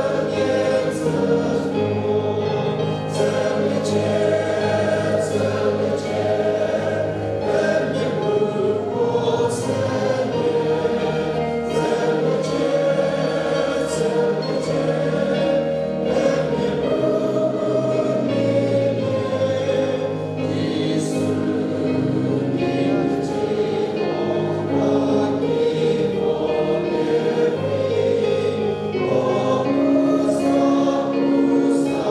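Many voices singing a hymn together, led by a song leader, with long held notes at a steady volume.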